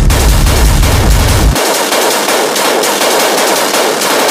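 Hard techno track with a fast, dense run of distorted hits. The bass drops out about a second and a half in, leaving only the high, rattling part of the rhythm.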